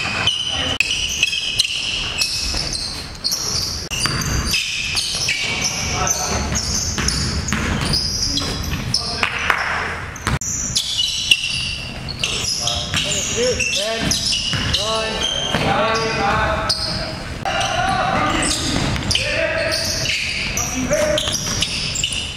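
Live basketball play in a gym: a basketball bouncing on the hardwood court with many short knocks, and players' voices calling out now and then.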